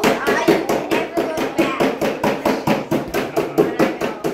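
Rapid, even tapping about seven times a second, with voices over it.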